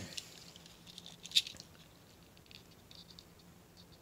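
Die-cast model Mustangs handled in the fingers: faint scattered clicks and rattles of metal and plastic, with one sharper click about a second and a half in.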